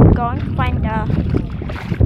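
Wind buffeting the microphone with a heavy rumble, and three or four short high calls, each falling in pitch, in the first second or so.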